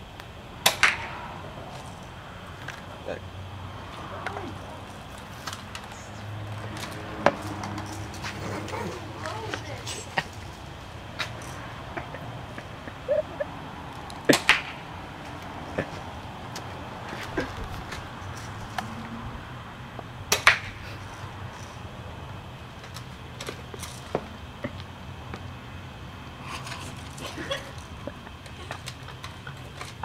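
Toy Uzi firing single shots at a foam boogie board, each a sharp snap, spaced a few seconds apart, the strongest about a second in, around the middle and about two-thirds of the way through.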